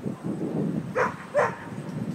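A dog barking twice, two short barks a little under half a second apart, over a low steady background.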